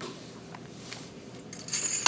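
Faint room background with a couple of soft ticks, then a quick cluster of bright metallic clinks with a short ringing jingle near the end, like small metal objects knocking together.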